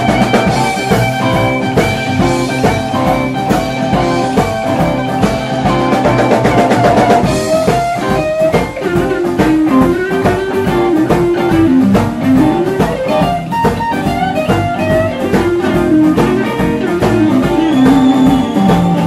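Live blues band playing: an electric guitar plays a lead line with bent notes over bass guitar and a drum kit. About halfway through, the lead line moves down into a lower register.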